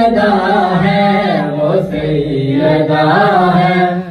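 Men and children reciting a noha together in Urdu, their voices chanting in unison over long held notes.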